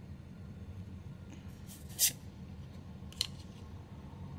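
Trading cards sliding against each other as the front card of a hand-held stack is moved to the back: a short swish about two seconds in and a fainter one just after three seconds.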